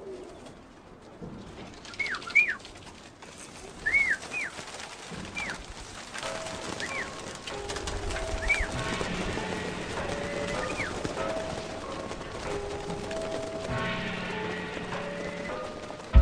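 Short bird chirps that rise and fall in pitch, a few at a time, over a low background; from about six seconds in, music with long held notes comes in under them and carries on.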